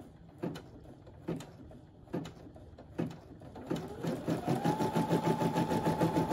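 Brother embroidery machine starting to stitch through vinyl: a few slow needle strokes just under a second apart, then from about four seconds in the motor whine rises in pitch as the machine speeds up to a fast, steady stitching rhythm.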